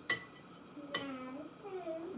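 Two sharp, ringing metallic clinks about a second apart from the double-boiler pot on the stove as it is handled to heat the water up again.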